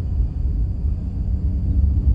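Steady low rumble of a truck driving along, engine and road noise heard from inside the cab.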